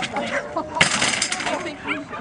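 Agility teeter (seesaw) board banging down onto the ground as the dog tips it, a sudden bang with a rattle lasting about half a second, a little under a second in.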